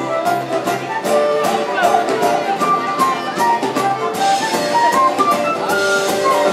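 Live folk band playing an instrumental passage: a quick melody line of short notes over a steady strummed and percussive beat.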